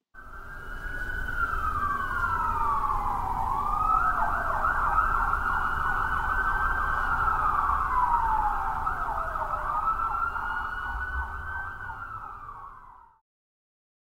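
Emergency vehicle sirens wailing, at least two overlapping, each slowly falling in pitch and sweeping back up, over a low rumble. The sirens fade out about a second before the end.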